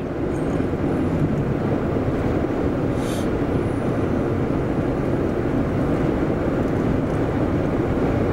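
Steady road and engine noise heard inside a car's cabin while driving at road speed, with a brief hiss about three seconds in.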